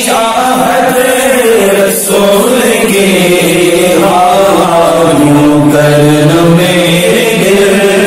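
A man singing an Urdu naat in a slow devotional chanting style, drawing out long held notes that slide between pitches. About halfway through, his voice settles onto lower, steadier sustained notes.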